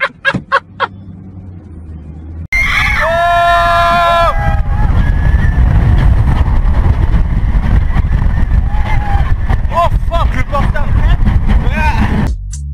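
Roller coaster ride: loud, continuous wind rush and rumble, with riders screaming, first one long scream and then shorter yells near the end. Before it comes on, a few sharp clicks over a low hum inside a car.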